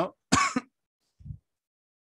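A man clears his throat once, a short sharp burst about a third of a second in, followed by a faint low sound near the middle.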